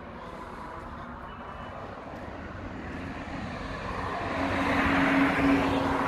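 A motor vehicle going by. Its engine and tyre noise grows louder from about three seconds in, and a steady engine hum is heard in the second half.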